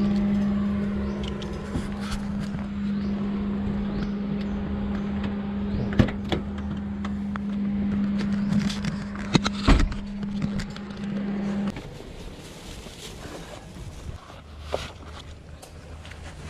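A steady, even hum from a small car, which cuts off suddenly about twelve seconds in. A few sharp clicks and one louder knock come from the car's door being handled.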